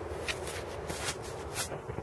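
Handling noise: soft rustling with several brief scuffs and clicks as a handheld GPS device is handled close to the microphone.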